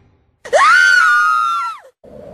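A woman's single high-pitched scream, starting about half a second in, held for over a second and dropping in pitch as it breaks off near the end.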